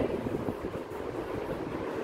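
Steady background noise, an even rushing haze with no clear strokes, tones or rhythm.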